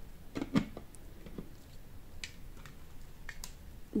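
A few scattered clicks and light knocks of plastic blender and mixer parts being handled and set down, the sharpest about half a second in.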